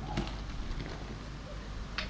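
White vinegar poured from a bottle into a plastic bucket of bicarbonate of soda, the mixture fizzing faintly as it foams up.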